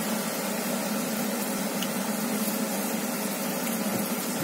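Floured carp pieces sizzling in oil in a frying pan, a steady hiss with a low hum under it.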